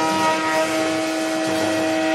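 Saxophone holding one long, steady note in a live free-jazz duo, over a wash of cymbals and drums from a drum kit.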